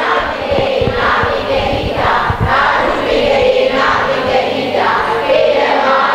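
A group of voices chanting together in unison, with drawn-out sung syllables in a steady, even rhythm.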